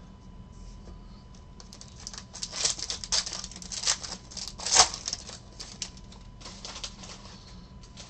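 A foil wrapper of a trading-card pack crinkling and tearing as it is opened by hand: a run of sharp crackles, the loudest rip nearly five seconds in.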